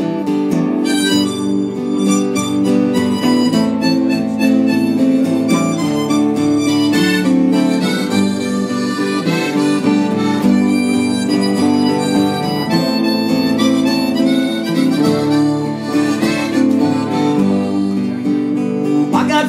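Harmonica playing an instrumental break over strummed acoustic guitar and mandolin in a live country-folk song.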